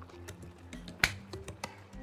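Wooden spatula stirring and knocking against a non-stick frying pan: a few light clicks and one sharp knock about a second in, over faint background music.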